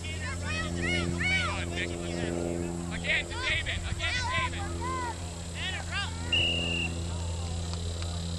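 Distant voices of players and spectators calling out across a soccer field, many short rising-and-falling shouts, over a steady low hum. A short, flat, high whistle-like tone sounds about six seconds in.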